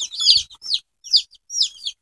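A brood of young chicks peeping: about ten short, high peeps from several chicks, each sliding down in pitch, coming irregularly with brief gaps.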